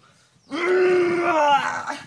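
A man's long, strained groan held at one steady pitch for over a second, the deliberate grunt of effort while heaving a shovelful of dirt.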